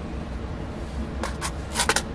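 A few light clicks and a brief rattle from a clear plastic box of straight pins being picked up and handled, starting a little past halfway.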